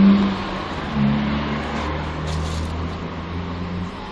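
City street traffic: a motor vehicle's engine running close by, a steady low hum that shifts slightly in pitch about a second in.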